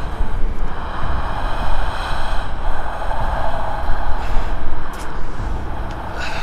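Loud, low rumbling drone with a hissing midrange layer that swells and fades several times, and faint steady high tones above it: the tense sound design of a horror film.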